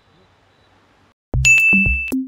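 Faint background hiss, then a bit over a second in electronic music starts suddenly: drum-machine kick and bass thumps under a held high ding.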